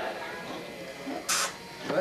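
Soft voices in a quiet room, with one short hiss about a second and a half in.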